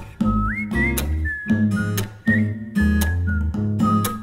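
Indie-pop band music: a whistled melody over guitar, bass and drums.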